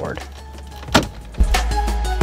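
A single sharp plastic snap about a second in as the climate-control bezel's retaining clips pop free of a Toyota Tacoma's dash. Background music with a steady beat follows.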